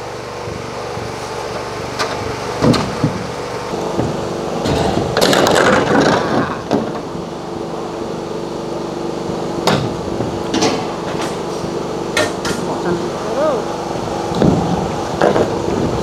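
Corrugated metal roofing sheets being handled, with scattered sharp knocks and a sheet rattling for about a second and a half around five seconds in, over a steady motor hum.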